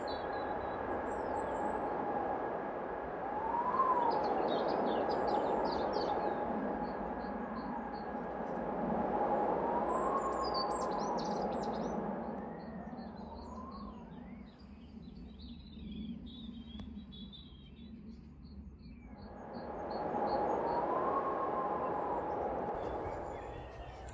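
Outdoor ambience: small birds chirping in short high bursts, and a distant siren whose wail rises and falls in pitch several times, over a background rush that swells and fades.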